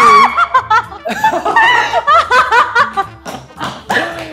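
Several people laughing and shrieking excitedly over background music with a steady bass line.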